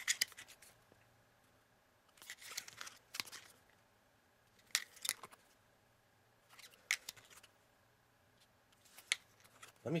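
Small plastic game records clicking and clattering against one another as they are handled and held up one at a time, in short bursts of a few taps about every two seconds with quiet in between.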